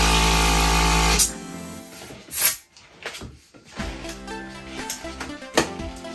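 Electric balloon pump running for about a second as it inflates a balloon, then cutting off suddenly. About a second later comes a short, sharp hiss.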